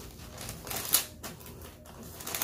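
Hands handling parchment paper and the shirt fabric on a heat press: a few light, sharp crackles and taps, the sharpest about a second in.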